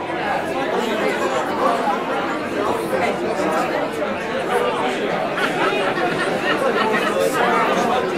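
Crowd chatter: many voices talking over one another at once, with no single voice standing out, steady throughout with a roomy echo.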